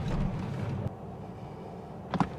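Low rumble heard inside a Tesla Model S Plaid's cabin as the car makes a short dry hop forward, cutting off about a second in. A faint steady hum follows.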